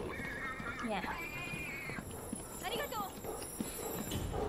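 A whinny-like animal cry from the film soundtrack, held at a steady pitch for about a second, followed by a shorter call near three seconds in.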